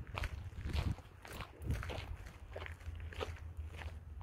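Footsteps of a person walking on a dirt trail, about two steps a second, over a low steady rumble.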